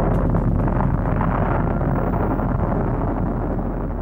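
Continuous deep rumbling roar of a nuclear blast, easing off slightly near the end.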